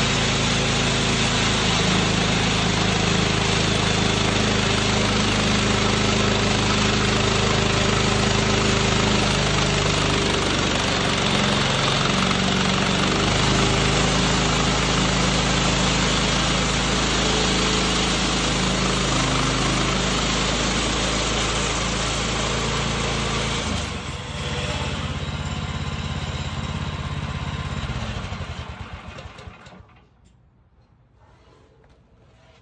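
Woodland Mills HM126 bandsaw mill's gas engine running steadily as the blade cuts through an ash log, its pitch shifting partway through. About 24 seconds in the sound dips and changes, and near the end the engine winds down and stops.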